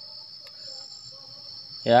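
Steady, high-pitched insect drone, one unbroken note with a fainter, higher whine coming and going above it.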